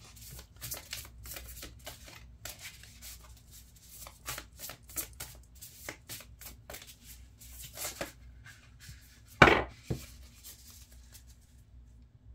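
A deck of tarot cards being shuffled by hand, card on card, in many soft irregular flicks and slaps. A single louder knock comes about nine and a half seconds in.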